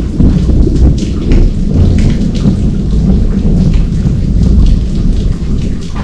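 Heavy rain falling, with a deep, continuous rumble underneath.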